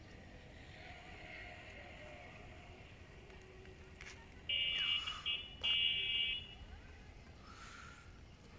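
A vehicle horn sounding two steady blasts, each just under a second, over faint outdoor background noise.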